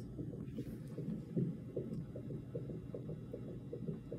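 A fetal heart monitor's Doppler ultrasound transducer on a pregnant belly playing the baby's heartbeat as a quick, regular pulse, low in pitch.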